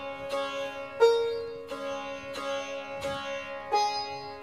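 Sitar plucked in a slow, even pattern, about one stroke every 0.7 s, practising chikari drone-string strokes and a melody note in the sa–ni exercise; the sympathetic strings ring on between strokes, and the loudest pluck comes about a second in.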